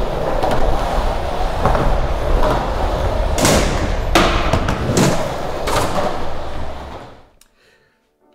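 Skateboard wheels rolling on smooth concrete with a steady rumble, broken by four sharp clacks of boards striking the ground, spaced under a second apart in the middle of the stretch. The rolling fades out shortly before the end.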